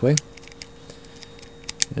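A few light, sharp clicks from a Remington 597 trigger group as its hammer and trigger are worked back and forth by hand, the loudest near the end. The freshly oiled hinge is being worked in to cure a trigger that would not catch.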